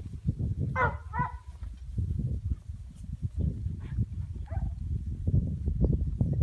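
Two short barks from a young Hangin Tree Cowdog about a second in, with fainter calls a few seconds later, over a low, uneven rumble of wind buffeting the microphone.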